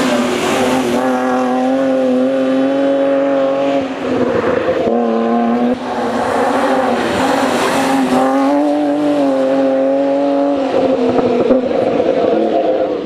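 BMW E36 3 Series rally car's engine running at high revs, held at a steady high pitch for a few seconds at a time, with short breaks about four and six seconds in.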